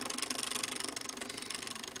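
Small stepper motor buzzing as it steps, turning Lego gears that swing an ultrasonic sonar sensor back and forth. It makes a rapid, even stream of steps.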